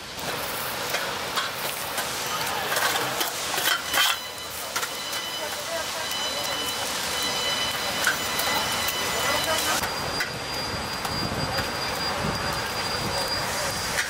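Charcoal grill fire crackling and kebab meat sizzling along a long open grill, a steady noisy hiss with scattered sharp cracks. Crowd chatter runs faintly underneath.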